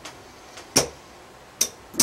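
Casino chips clicking against one another as they are handled and set down on a craps layout to place bets: two sharp clicks a little under a second apart.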